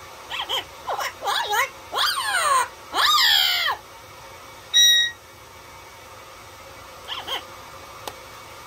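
Yellow-headed Amazon parrot calling: a quick run of squawky calls that swoop up and down in pitch, then a short, loud whistle held on one pitch about halfway through. One brief, faint call comes near the end.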